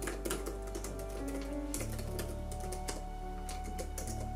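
Fast, irregular keystrokes typed on an HP laptop keyboard, over soft piano background music.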